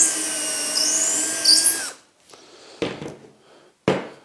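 Cordless drill with a 3 mm bit running steadily as it drills through a guide block into the wooden bench top, then stopping about two seconds in. A couple of light knocks follow.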